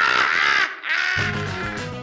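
A man's loud, raspy yell in two parts, with no words, followed about a second in by music starting with a steady bass line.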